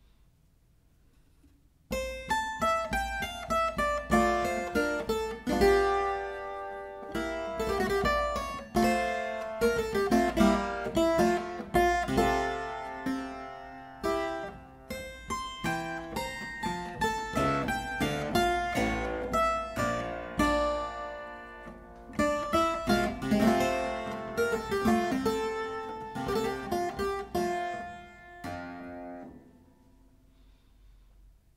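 Clavichord playing a slow two-line passage from a Classical-era sonata movement, with Bebung (a key-pressure vibrato) on the notes marked with dots. The playing starts about two seconds in and dies away just before the end.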